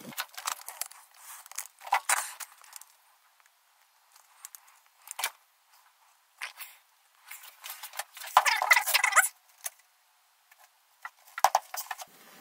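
Scattered clicks, knocks and rustles of handling as a camera is set down on a plywood workbench and a hook-and-loop sanding disc is fitted to a random orbit sander, with a longer rasping rustle about eight seconds in.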